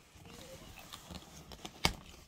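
Cardboard shipping box being opened by hand: scraping and rustling of packing tape and flaps, with one sharp snap near the end.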